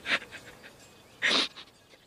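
A person drawing a short, audible breath: a quick rush of air about a second in, with a fainter one at the start.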